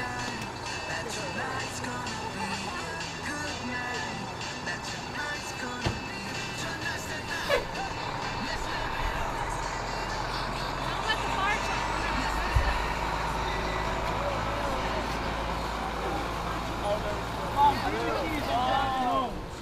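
Background music with people talking, and from about nine seconds in the steady low rumble of a fire engine's diesel engine as it drives across the lot.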